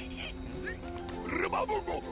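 Animal-like vocal sounds from a cartoon character, short pitched calls and a rasping burst, over steady background music.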